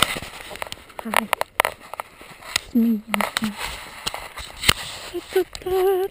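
A woman humming a few short notes of a tune, the last one held a little longer, with scattered sharp clicks and scuffs of footsteps and handling as she walks on a gritty, icy road.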